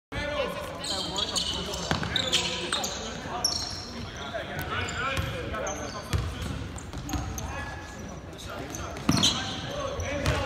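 Basketball game sounds in a large gym: a basketball bouncing on the hardwood court now and then amid players' and onlookers' voices calling out and chattering, with a laugh near the end.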